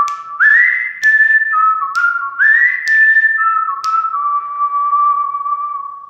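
Outro jingle of a whistled tune: a repeated phrase that slides up quickly to a high note and then steps down to lower ones, with sharp clicks at intervals of about a second. The last low note is held and fades out near the end.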